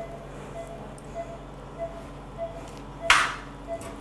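Veterinary patient monitor beeping steadily, a short tone about one and a half times a second, over a low steady hum. A brief loud rustle comes about three seconds in.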